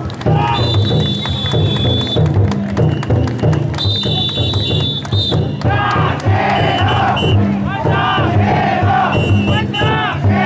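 The big taiko drum inside a chousa drum float beaten in a steady rhythm, under the massed shouts of the bearers carrying it. Two long high whistle tones sound in the first half, and the chanting voices swell from about halfway through.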